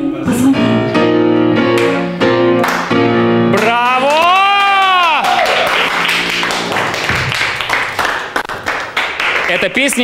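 A woman sings with grand piano accompaniment, finishing the song on a long held note that swoops up and falls back while the piano's last chord rings on. A small group of people then claps for several seconds.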